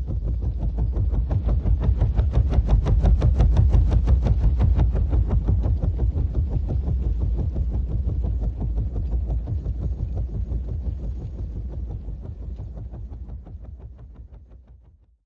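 Helicopter rotor blades chopping in a fast, even beat over a deep rumble. It swells over the first few seconds, then slowly fades away toward the end.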